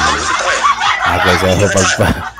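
A man laughing in a run of short, quick bursts after a brief "ay", over a steady hiss that cuts off at the end.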